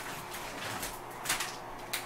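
A popsicle's plastic wrapper being handled, with three short, quiet crinkles about half a second to a second apart.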